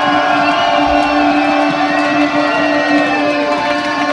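Live band with electric guitars playing a slow, ringing passage over one steady held note, loud and unbroken, heard from the audience.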